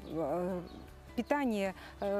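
A woman speaking in short phrases: a drawn-out vowel with wavering pitch near the start, then a few more words about a second later.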